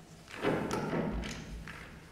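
Sheets of paper rustling as they are handled at a desk close to the microphone, with two soft thumps about a second in and a little later.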